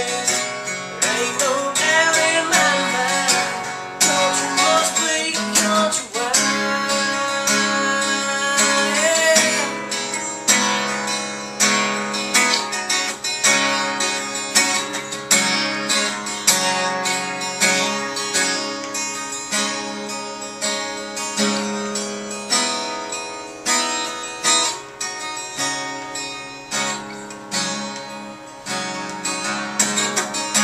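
Acoustic guitar strummed in a steady rhythm, with a man singing over it for about the first ten seconds; after that the guitar plays on alone.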